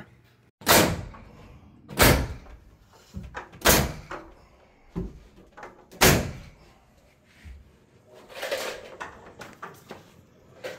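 A series of loud, sharp knocks on the timber floor framing: four strong strikes spaced one and a half to two and a half seconds apart, each ringing briefly, with a few fainter knocks between them.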